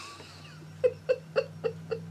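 A woman giggling softly: about six short laughs in quick, even succession, starting about a second in, over a steady low hum.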